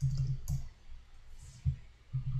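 Keystrokes on a computer keyboard: a quick run of taps in the first half second, then a pause and one more tap near the end.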